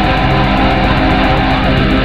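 Black metal: loud, dense distorted electric guitars and bass over fast, evenly spaced drum hits, at a steady level throughout.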